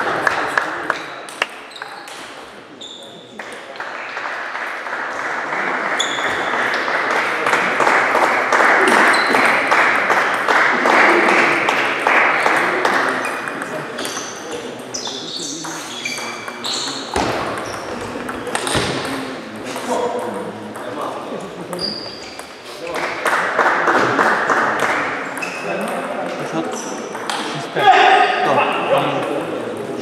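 Table tennis balls clicking off bats and tables in a sports hall, scattered sharp clicks from several tables, over a steady background of voices and hall noise.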